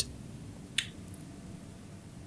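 Low room tone in a pause between speakers, with one short sharp click a little under a second in.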